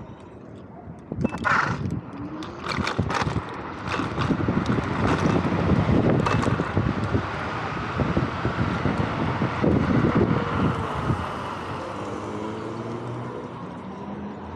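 Wind buffeting the microphone and tyre noise from a Vsett 10+ electric scooter on the move, with sharp knocks and rattles over rough pavement a second or two in. The wind noise is heaviest in the middle and eases near the end as the scooter slows.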